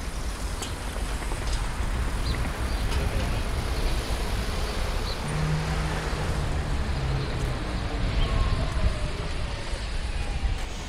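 Road traffic noise: a steady low rumble with no pauses, and a short low hum about five seconds in.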